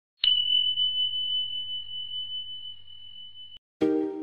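A single high bell-like ding, struck once about a quarter second in. It rings on one steady pitch and fades slowly for about three seconds, then cuts off. Plucked-string background music starts just before the end.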